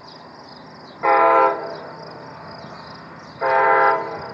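Metra MP36 diesel locomotive's air horn sounding two short blasts, one about a second in and one near the end, each a chord of several steady tones.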